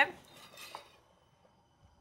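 Chopped parsley being scraped off a cutting board with a blade and dropped into a ceramic bowl: a faint scrape with a light tick in the first second, then quiet.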